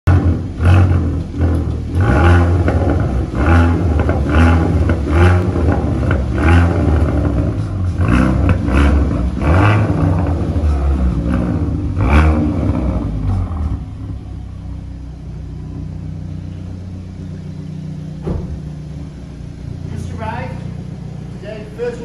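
Hyundai i30 N's 2.0-litre turbocharged four-cylinder petrol engine and exhaust, blipped hard about ten times in quick succession. Each surge comes with sharp cracks, then the engine settles to a steady idle about two-thirds of the way in.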